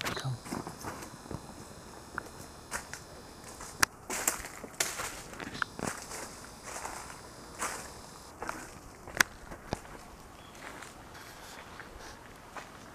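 Footsteps of a person walking, an irregular run of steps and scuffs, with a few sharper knocks and rustles from the handheld camera being moved.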